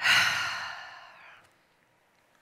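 A woman's deep breath let out as a long sigh close to the microphone: it starts suddenly and fades out over about a second and a half.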